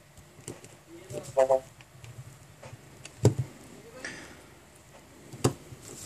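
Scattered sharp clicks and taps of plastic parts and small tools as a smartphone's rear frame is fitted and pressed down around its edges, the two loudest about three and five and a half seconds in.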